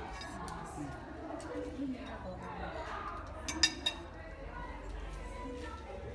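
Metal cutlery clinking twice against a ceramic plate, two sharp quick clinks about three and a half seconds in, over murmured voices.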